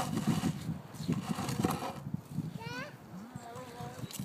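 Snow shovel blade scraping and knocking over wet asphalt and slush in short, irregular pushes, loudest at the start. A brief high-pitched voice sounds a little past the middle.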